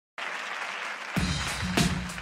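Studio audience applauding. About a second in, a pop song's intro starts under the applause, with bass and a steady drum beat hitting roughly every half second.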